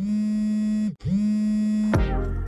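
Title ident jingle: two held electronic notes on the same low pitch, each just under a second, with a buzzy, bright tone, the second following right after a brief break.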